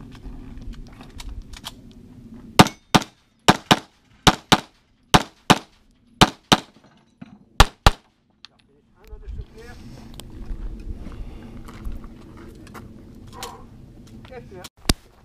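Twelve pistol shots fired as six quick pairs (double taps), starting about two and a half seconds in and ending about eight seconds in. This is a practical-shooting competitor engaging targets after the start signal.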